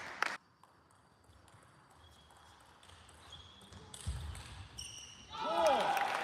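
A few sharp table tennis ball clicks at the very start, then a quiet hall. Near the end a player gives a loud shout lasting under a second, with its pitch rising and falling.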